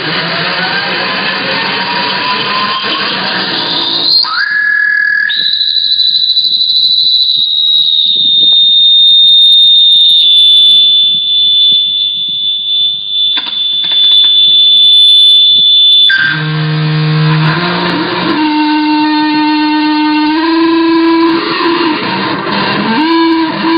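Seven-string electric slide guitar through a modified Fender 25-watt amp, its strings driven by a speaker-feedback sustainer. A distorted sliding tone rises for the first few seconds. A single high-pitched feedback squeal then holds for about ten seconds, sagging slightly in pitch, and cuts off suddenly, giving way to long sustained notes that step up and down in pitch.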